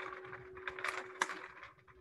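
Rustling noise with a steady low hum and a few sharp clicks, picked up by an open microphone on a video call.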